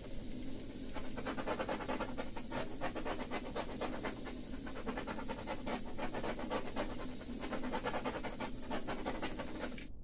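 Handheld butane torch flame hissing steadily with a fluttering rush as it is passed over a wet acrylic paint pour, which is done to pop surface air bubbles; it cuts off abruptly near the end.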